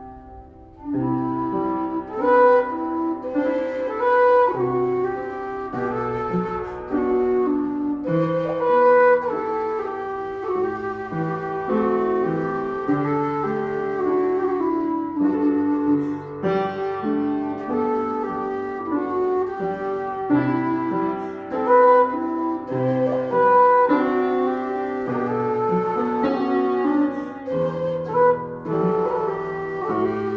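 Low whistle playing a slow Celtic-style melody over chords on an out-of-tune upright piano, the whistle coming in about a second in.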